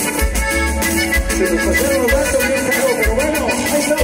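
Instrumental passage of norteño dance music with no singing: a gliding accordion melody over a pulsing bass line.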